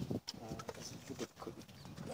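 A male lion at close range, muzzle against the cage mesh, sniffing and mouthing at meat held out to it. The sound is a run of soft, irregular mouth clicks and smacks.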